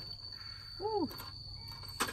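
Steady high-pitched trill of a cricket, with a short rising-then-falling vocal 'hm' about a second in and faint clicks of cockle shells on the charcoal grill just after.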